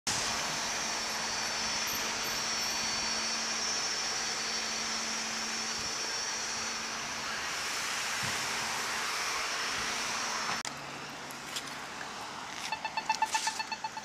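Steady street traffic noise with cars passing. After an abrupt cut about ten and a half seconds in, a pedestrian crossing signal gives a rapid run of high beeps near the end.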